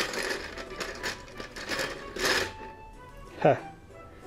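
Plastic rustling and clicking as a plastic model kit's parts sprue is taken out and handled, in irregular crackles with a louder burst near the start and another about halfway through.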